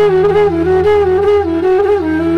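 Background music: a flute playing a flowing, ornamented melody over a steady low drone.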